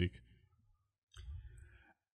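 A pause in speech: a word trails off, then silence broken about a second in by a short, faint mouth click and breath from a speaker.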